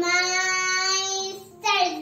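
A young girl singing, holding one long steady note, then starting a new phrase after a short break near the end.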